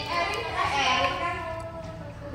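A person's voice, drawn out in long sounds rather than clear words.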